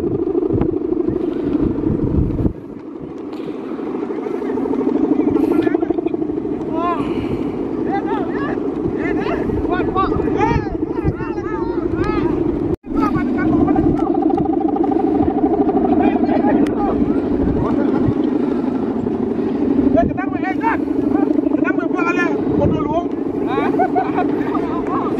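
The bamboo bow hummer (guangan) strung across the top of a large Balinese bebean kite, droning steadily in the wind with its pitch wavering slightly.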